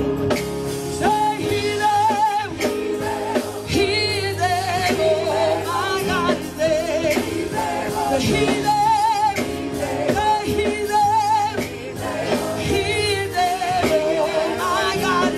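Gospel praise team of women singing into microphones over a live band with drums, the sung lines wavering with vibrato.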